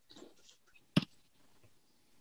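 Tarot cards being handled, with faint rustling and one short sharp click about a second in.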